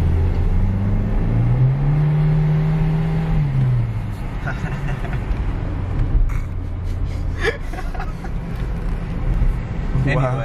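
Car engine heard from inside the cabin while driving on a wet road. Its note rises about a second in, holds for a couple of seconds, then drops back about four seconds in, over a steady road and tyre rumble.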